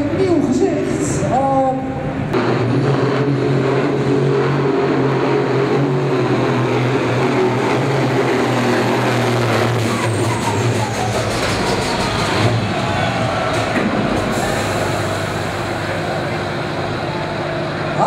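Turbocharged International tractor engine running hard and steady at high revs while it drags a tractor-pulling sled, easing off somewhat in the last few seconds as the pull ends.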